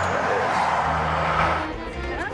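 A motor vehicle running close by: a steady low engine drone under a broad rush that fades away about one and a half seconds in.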